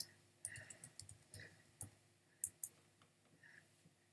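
Faint, irregular computer clicking: about eight short clicks, most in the first three seconds, over near silence.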